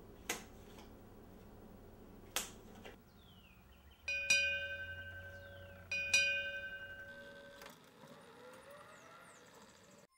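Two sharp taps, then a faint falling whistle, then a metal bell struck twice about two seconds apart, each stroke ringing clear and dying away.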